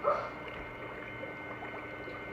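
A brief high-pitched vocal squeal at the very start, rising then falling in pitch, followed by quiet room background with a faint steady hum.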